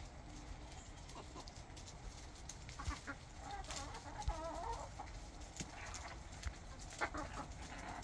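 Backyard hens clucking quietly, with a few short calls and a longer wavering call about halfway through.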